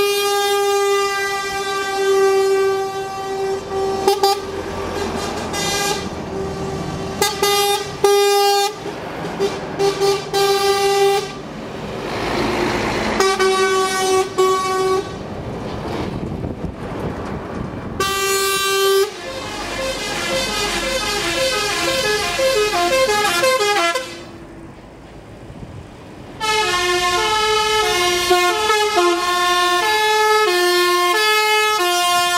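A convoy of lorries passing with diesel engines running while their drivers sound air horns: long held horn chords for the first part, broken by passing engine and tyre noise. In the second half a horn steps quickly up and down through a run of notes like a tune, with a short quieter gap between passes.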